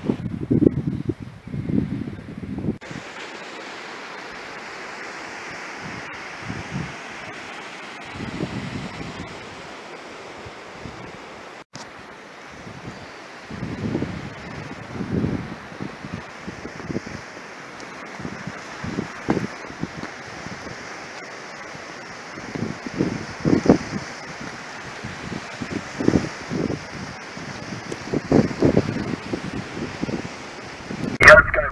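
Surf washing over a rocky shore in a steady rush that comes up suddenly about three seconds in, with gusts of wind buffeting the microphone, most heavily at the start and near the end.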